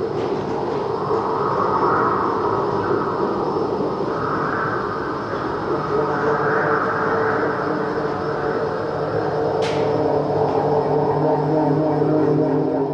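The soundtrack of a projected video artwork, playing through loudspeakers: a steady rumbling, rushing drone with low humming tones that swells and eases every couple of seconds. A single short sharp click comes near the end.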